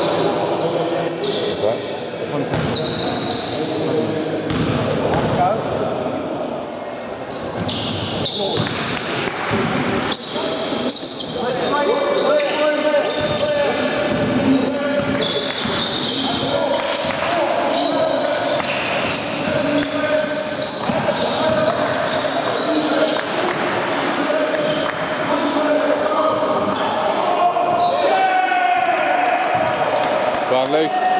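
Basketball game play on a wooden sports-hall court: the ball bouncing repeatedly as it is dribbled, with players' voices and calls, all echoing in the large hall.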